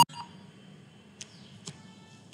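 Two faint, short computer-mouse clicks about half a second apart, over low room hiss.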